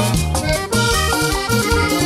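Instrumental passage of a cumbia without vocals: a stepping lead melody over a pulsing bass and percussion beat.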